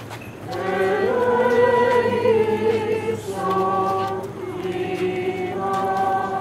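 A group of voices singing Greek Orthodox chant without instruments, in long held notes. After a brief pause at the start the singing resumes, with short breaths between phrases about three and five and a half seconds in.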